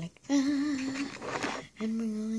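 A girl humming to herself: a few long, held notes of a tune, with a brief rustle between the notes.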